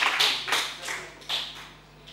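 Audience applause dying away into a few last scattered claps, gone by about a second and a half in.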